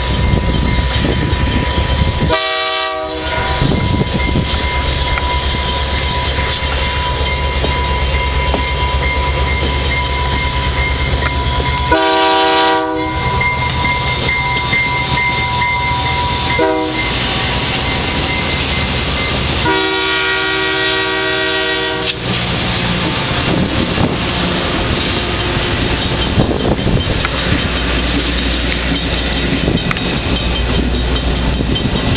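VIA Rail passenger train led by EMD F40PH-2 diesel locomotives running past: a steady low diesel rumble and wheels on the rails. Over it the locomotive's air horn sounds four blasts, long, long, short, long, the level-crossing signal, with the last blast the longest.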